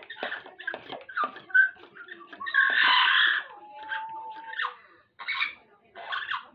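Amazon parrot calling: a quick run of short chattering calls, then a loud harsh squawk about two and a half seconds in lasting nearly a second, followed by a long level whistled note.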